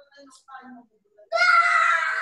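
A man's voice: a few soft spoken sounds, then a little over a second in a loud, drawn-out vocal shout that sags slightly in pitch.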